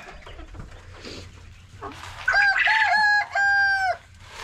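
A rooster crowing once, about halfway through: a cock-a-doodle-doo of four notes, the last one drawn out.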